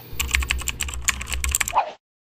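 Computer keyboard typing: a rapid, dense run of key clicks over a low hum, cutting off suddenly near the end.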